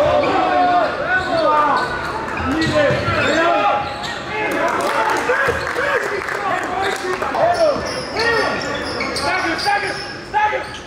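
Game sounds on an indoor basketball court: the ball bouncing on the hardwood floor, sneakers squeaking in short rising and falling chirps, and voices calling out.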